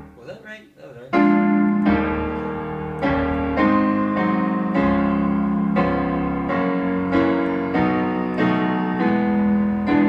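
Digital piano played with both hands in block chords, a new chord struck every half second to a second. The chords run through a loop of dominant sevenths, each resolving down a fifth around the circle of fifths. It drops quieter for about the first second, then the chords resume.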